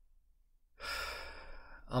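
A man's audible breath in through the mouth, starting about three-quarters of a second in and lasting about a second, taken in a pause before he goes on speaking.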